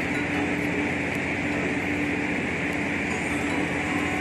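Steady, even background drone: a constant hiss with a low hum under it, no distinct events.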